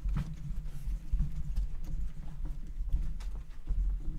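Cloth wiping marker off a glass lightboard: a continuous run of rubbing strokes with low, uneven thuds from the glass.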